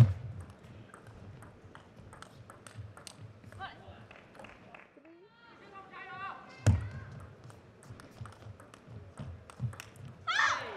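Table tennis ball clicking off rackets and bouncing on the table, with a sharp, loud hit at the very start and another about two-thirds through, and many lighter ticks between. Squeaky pitched sounds come in the middle, before the second hit.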